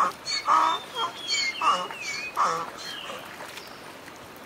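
Donkey braying: a run of honking calls about every half second that grow fainter and stop about two and a half seconds in, leaving the trickle of a shallow stream.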